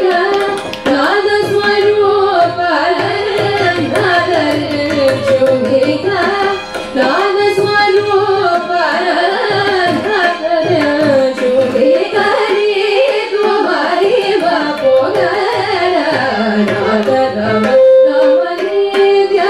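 Carnatic vocal music: women singing a melodic line with sliding, wavering ornaments, accompanied by violin and a mridangam drum.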